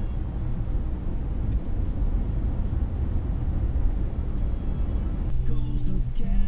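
Low, steady rumble of road and engine noise heard from inside a moving car's cabin. Near the end, music with held notes comes in over it.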